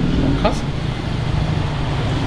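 A steady low mechanical hum runs throughout, with one short spoken word about half a second in.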